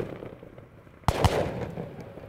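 Multi-shot consumer fireworks cake ('Gold Rush') firing its last shots: two sharp bangs close together about a second in, each trailing off into a fading tail.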